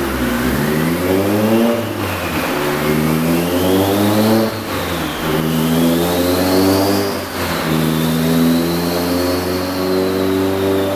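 Turbocharged Honda F20B four-cylinder engine accelerating under load on a chassis dyno. Its revs climb and drop back three times as it shifts up through the gears, with a high whine above the engine note that rises and falls over the run.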